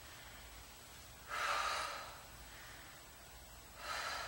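A woman breathing hard with exertion while working dumbbells: one sharp, breathy exhale a little over a second in, and another starting at the end.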